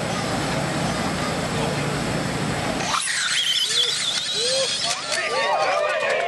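A 1/10-scale electric RC drag car launching and running down the track, its motor giving a high whine that slides in pitch. The whine starts abruptly about three seconds in and is followed by spectators shouting and cheering.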